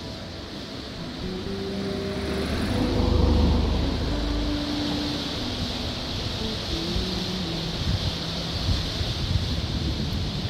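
Steady rush of the River Wye pouring over rocky shelves and rapids. A road vehicle passes by, rising to its loudest about three seconds in and fading. Soft background music with held notes plays underneath.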